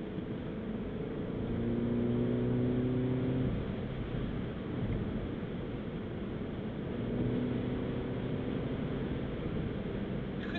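Mini Cooper S's 2.0-litre turbocharged four-cylinder engine and tyre noise, heard from inside the cabin while driving. The engine note swells about a second in and drops away after a couple of seconds, then swells again more briefly around seven seconds.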